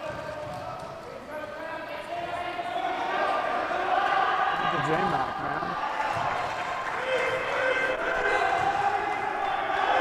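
A basketball bouncing on a hardwood gym floor during wheelchair basketball play, with players' voices calling out on the court.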